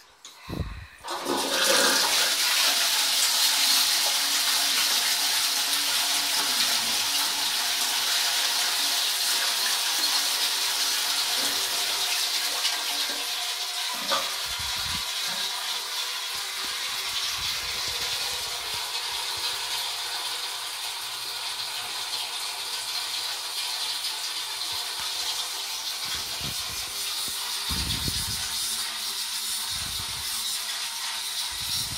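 Royal Venton New Coronet low-level cistern flushed by its lever: a sudden loud rush of water about a second in, then a long steady hiss of running water as the cistern refills.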